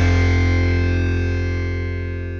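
Distorted electric guitar chord held and ringing out, slowly fading away as a rock song ends.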